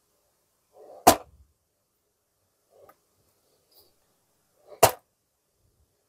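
Two sharp clicks about four seconds apart, each preceded by a faint rustle: a recording of the noise made by the gimmick of 'The Fall' magic trick, played back. This is the trick's unwanted noise, which the reviewer finds too audible for quiet, intimate performances.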